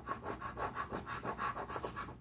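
Rapid rubbing strokes scratching the coating off a paper scratch-off lottery ticket, about five strokes a second.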